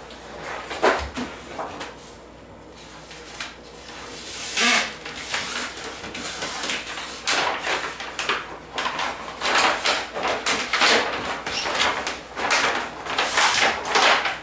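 A large sheet of printed wrap vinyl and its paper backing rustling and crackling as the backing is peeled part-way off and the sheet is handled and pressed against a refrigerator door. The noise comes in irregular bursts, sparse at first and almost continuous in the second half.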